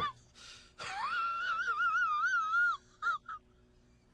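A high, voice-like wail that rises and then quavers up and down for about two seconds, followed by two short squeaks.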